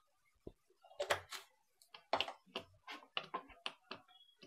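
Sharp knocks and clinks of kitchen utensils against a pan: one cluster about a second in, then a quick run of separate knocks through the second half.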